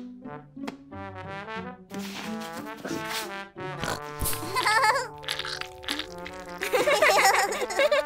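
Light background music for a children's cartoon, with several held notes and a short knock about four seconds in.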